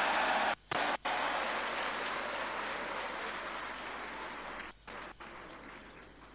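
A large seated audience applauding, a dense, even clatter of many hands that cuts out twice briefly near the start and then fades away over the last second or so.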